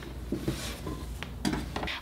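Quiet handling sounds of folded fleece tops being laid and pressed into a wooden dresser drawer: soft fabric rustling, with two light knocks of wood a little past the middle.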